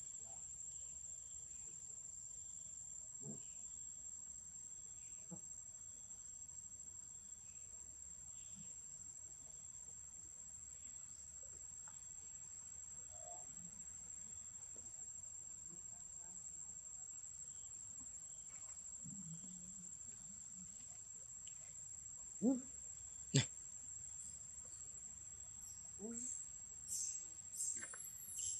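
Insects calling in a steady high-pitched drone, with two short, sharp sounds about a second apart near the end.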